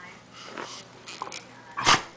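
A dog making breathy noises close to the microphone, with one short, loud burst just before the end.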